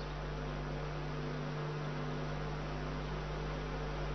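Steady electrical mains hum with a light hiss, a constant low drone that does not change.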